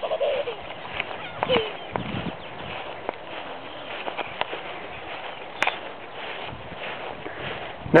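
Outdoor background noise with scattered light knocks and rustles, and brief faint voice fragments, one about a second and a half in.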